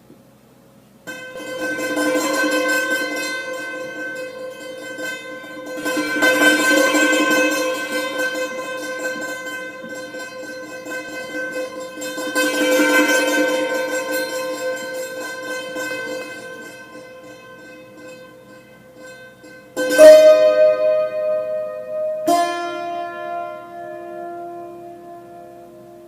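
Yanggeum, a Korean hammered dulcimer with metal strings, playing a held chord of rapidly repeated notes that swells and fades three times. Near the end come two sharp, loud strikes, the second on new notes that ring on.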